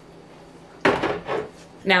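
Glass clip-top storage jar clinking and knocking against other jars as it is lifted off a pantry shelf. A sudden sharp clink just under a second in, then a brief rattle.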